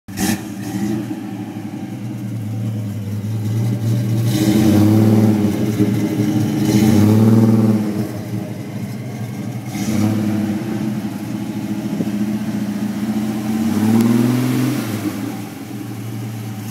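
1965 Ford Mustang's 200 cubic inch inline-six running through its exhaust, a steady idle revved up and let back down about four times.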